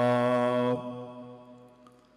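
A man's voice chanting Quran recitation, holding the last long vowel of a verse on one steady pitch, then stopping about three quarters of a second in; the sound fades away gradually over the next second.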